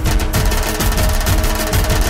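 Dhol drums played in a fast, even rhythm: deep strokes that drop in pitch, with quick sharp slaps between them, over a steady held tone of accompanying music.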